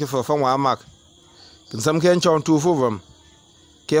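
A man's voice reading aloud in Lamnso', in three phrases with short pauses between, over a thin steady high-pitched tone.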